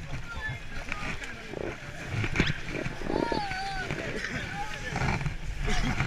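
Several people's voices at once in the confusion of a dinghy landing, with a wavering cry about three seconds in, over low wind rumble and handling knocks against the boat's rubber tube.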